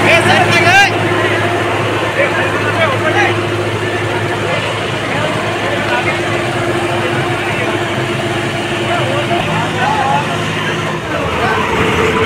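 Tractor diesel engine, a John Deere 5405, running steadily with people shouting over it. The engine note shifts a little near the end.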